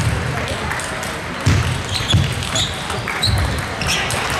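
A table tennis point being played in a sports hall: sharp clicks of the celluloid ball off bats and table, several low thuds of footwork, and brief shoe squeaks over background chatter from the hall.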